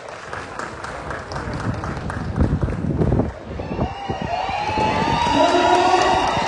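A crowd clapping, the claps growing louder. About four seconds in, high-pitched held voices join in as cheering.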